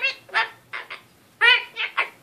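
Goffin's cockatoo chattering in short, speech-like phrases, three bursts in two seconds: the bird's mock 'lecture' babble.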